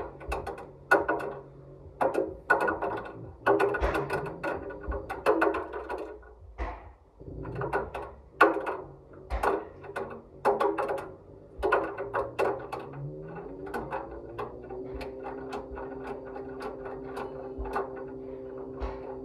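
Front-loading washing machine's stainless-steel drum turning with a ball tumbling inside, giving irregular knocks and clatters against the drum. After about thirteen seconds the drum speeds up: the knocking thins out and a motor hum rises in pitch, then holds steady as the drum spins.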